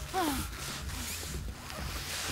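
A woman's short, muffled whimper falling in pitch about a quarter second in, with plastic rustling and crinkling as she struggles with a plastic bag tied over her head.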